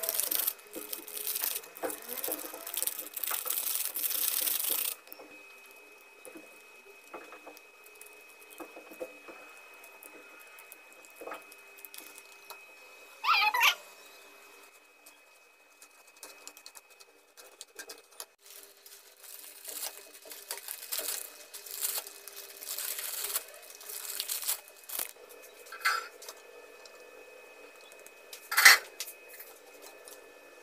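Instant-noodle seasoning packets crinkling and tearing as they are squeezed out over a plate. After that, a fork clicks and scrapes against the plate as the seasoning is stirred into a sauce, with one brief louder squeal about halfway through and a sharp clatter near the end.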